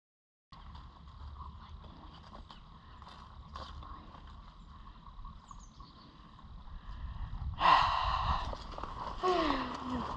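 Low outdoor rumble and rustling of a handheld camera being carried across a grass field, with scattered light clicks. About eight seconds in comes a sudden louder burst of noise, then a voice exclaiming near the end.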